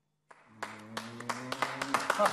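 A small audience applauding: the clapping breaks out about half a second in after a brief silence and grows louder.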